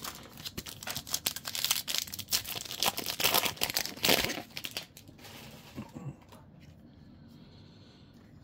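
Foil wrapper of a Topps Chrome baseball card pack being torn open and crinkled: dense crackling for roughly the first half, then only faint handling of the cards.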